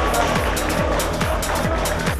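Background music bed with a steady driving beat, about four beats a second, over a falling low drum hit that repeats.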